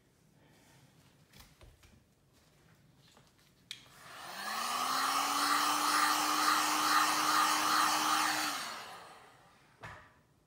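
Heat gun clicked on about four seconds in. Its motor spins up to a steady hum under a rush of hot air blown over wet epoxy resin, holds for about four seconds, then is switched off and winds down.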